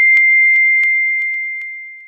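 Electronic beep of an intro logo sting: one long steady high tone that fades away over the second half, with a few faint clicks over it.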